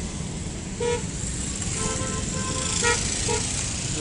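Street traffic rumbling steadily, with several short vehicle-horn toots from about a second in.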